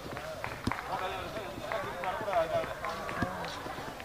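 Background voices of people talking, with irregular footsteps on a paved path.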